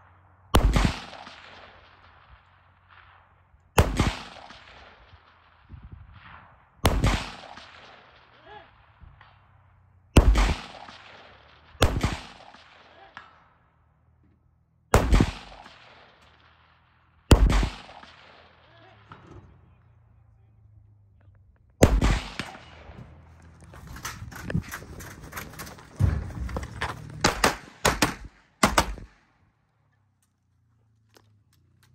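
Gunshots on an outdoor shooting range. Eight single shots come a few seconds apart, each trailing off in an echo. Near the end a quicker string of about ten shots follows.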